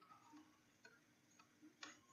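Near silence with a few faint ticks of a stylus tapping on a tablet screen during handwriting, most of them in the second half.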